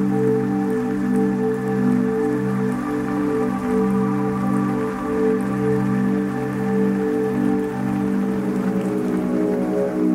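Ambient electronic music: slow, pulsing synth chords held over a low sustained tone, with a soft even hiss like rain in the mix. The chord shifts to a new one about eight seconds in.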